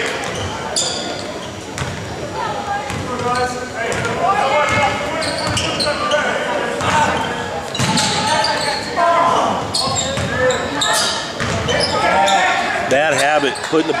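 Basketball being dribbled on a hardwood gym floor, short knocks amid continual indistinct talk and calls from spectators in the gym.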